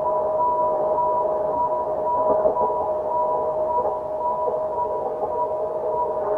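Ambient drone music: two steady high tones held throughout over a softly wavering lower layer, with no beat.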